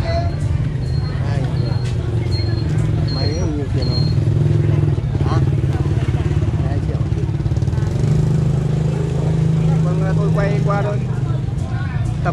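Engine running steadily nearby, a loud low hum. For the first four seconds it comes with a row of short, evenly spaced high beeps, and there is faint chatter in the background.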